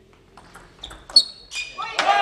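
Table tennis ball being struck by the bats and bouncing on the table in a rally: a few sharp clicks, the loudest and ringing about a second in. A short rising sound follows near the end.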